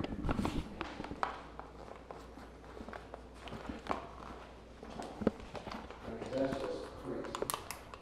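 Scattered light taps, clicks and footsteps in a small room, with faint murmured voices about six seconds in.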